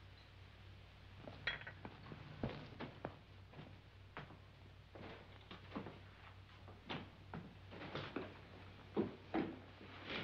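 Sharp taps and clinks, roughly two a second and irregular: china cups and saucers being handled, and boot footsteps on a hard floor. A steady low hum runs underneath.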